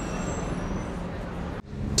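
Steady outdoor street noise from passing traffic, an even hiss with a low rumble, that cuts off suddenly about a second and a half in.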